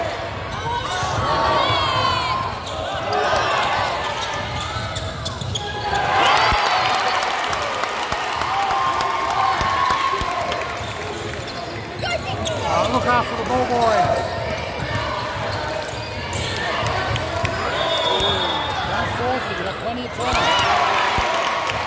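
Basketball game on a hardwood court: sneakers squeaking in short chirps, the ball bouncing, and players and spectators calling out indistinctly.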